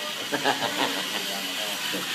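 Faint background voices over a steady hiss.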